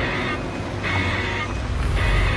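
A sports car's engine running as the car rolls slowly into a parking spot, under soundtrack music.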